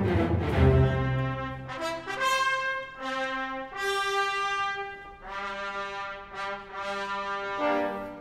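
On-stage trumpets blowing the herald's call summoning a champion to fight: a fanfare of long held notes with short breaks between them. A low orchestral chord is fading out as it begins.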